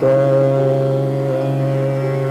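Hindustani classical music in Raga Multani: a long note begins and is held steady over a continuous tanpura drone.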